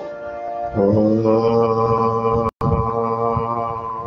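A man's voice chanting one long, steady held note, entering about a second in, with a momentary cutout of the audio midway.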